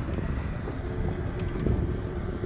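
Outboard motorboat engine running steadily, with wind buffeting the microphone.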